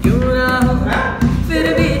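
A man singing long held notes that slide in pitch: one note glides up and is held, then the line dips and rises again about one and a half seconds in.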